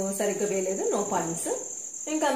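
A woman speaking for about the first second and a half, with a steady high-pitched cricket trill going on behind her throughout.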